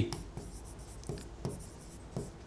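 Faint scratches and small ticks of a stylus writing on a digital pen display, scattered irregularly between spoken phrases.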